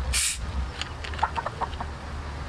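A 1.5 L Coca-Cola bottle's cap twisted open with a short hiss of escaping gas, then a chicken clucking in a quick run of short calls in the second half.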